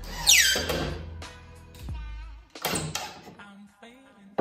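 Cordless drill driving a screw into wood, its whine falling sharply in pitch about a quarter second in, with another short burst near three seconds. Background music plays throughout.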